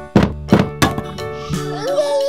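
Three wooden thunks in quick succession in the first second, as a row of toy domino bricks topples, over children's background music.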